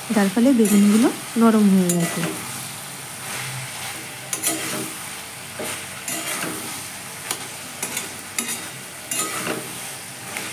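Vegetables frying in oil in a metal kadai, sizzling steadily, while a metal spoon stirs them and scrapes against the pan in short strokes about once a second.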